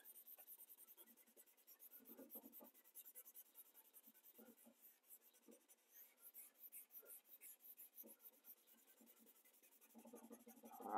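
Faint, uneven rubbing strokes of a blending stump spreading 4B graphite shading over drawing paper.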